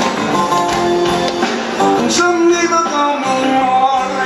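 Live rock band playing through a PA, with electric and acoustic guitars.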